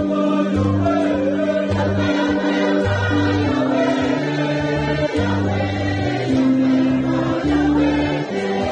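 Choir singing a gospel hymn over sustained instrumental chords, with a bass line that changes note every second or so.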